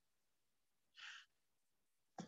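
Near silence, with one faint, short breath from the speaker about a second in.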